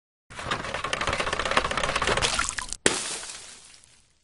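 Logo intro sting made of sound effects: a dense crackling noise for about two and a half seconds, a brief cut-out, then one sharp hit that fades away over about a second.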